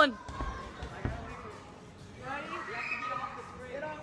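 Two dull thumps, one just after the start and another about a second in, followed by faint voices echoing in a large hall.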